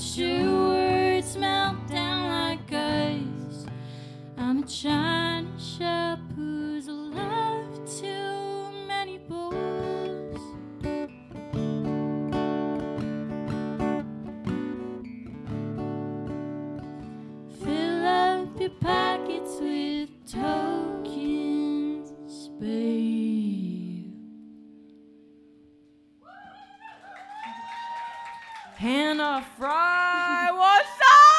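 A live band plays the end of a song: a woman's lead vocal over strummed acoustic guitar, drums and electric guitar. The last chord rings out and fades almost to nothing about three-quarters of the way through, then the audience cheers and whoops.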